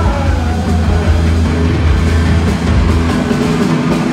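Punk rock band playing live through a concert hall's PA, with electric guitar and drums and a heavy low end, loud and steady throughout.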